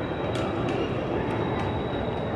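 Steady low rumble of a moving vehicle, with a thin, steady high tone above it and a few faint clicks.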